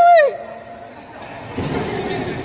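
A person's high-pitched yell that drops in pitch and breaks off about a third of a second in. Softer, indistinct noise follows near the end.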